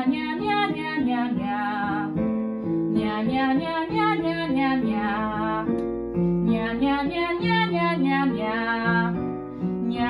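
A woman singing a minor-key vocal warm-up in short, twangy repeated syllables, over chords played on a digital piano. The singing comes in three phrases with brief breaks about two and six seconds in, each phrase set a step apart in pitch.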